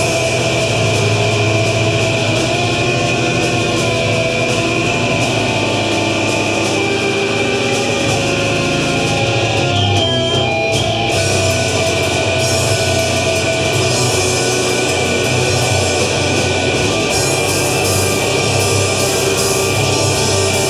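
Live heavy metal band playing loud: distorted electric guitars over a drum kit, with a short thinning of the cymbals and high end about halfway through.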